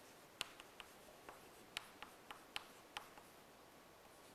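Chalk writing on a chalkboard: a string of faint, sharp taps as the chalk strikes the board with each stroke, about nine in three seconds.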